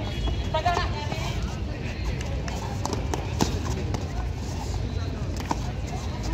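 Voices of players and onlookers during a kabaddi raid, heard over a steady low rumble. A few light knocks come through, the clearest about three and a half seconds in.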